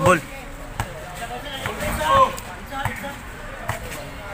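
A basketball bounced on a concrete court, a few separate thumps about a second apart, amid players' shouts.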